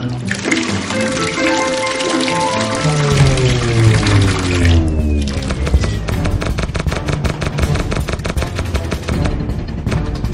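Cartoon sound effect of water pouring from a pipe into a tank, over music. About three seconds in, the music slides down in pitch like a power-down, the pouring cuts off about five seconds in, and music with a fast, even clicking beat follows as the lights go out.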